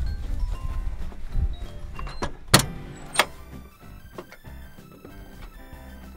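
Two sharp knocks a little over half a second apart, from boots and hands on the steel steps and frame of a wildfire skidder's cab, over low wind rumble on the microphone. Soft background music with held notes then comes in.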